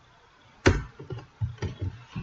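Computer keyboard keystrokes: one sharp key press about two thirds of a second in, then a run of lighter key clicks.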